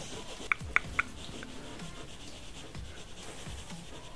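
Light rubbing and rustling on a bedsheet as a tiny kitten crawls and a hand moves over the cloth. Three short, sharp ticks come about half a second to a second in.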